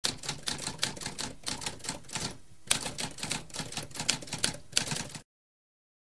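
Typewriter typing: quick keystrokes several a second, a brief pause about halfway, then one louder strike as the typing resumes. It stops abruptly a little after five seconds.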